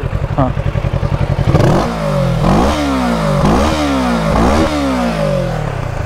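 Kawasaki Z650's parallel-twin engine, on its stock exhaust, idling with an even pulsing beat, then blipped several times from about two seconds in, each rev rising quickly and falling back.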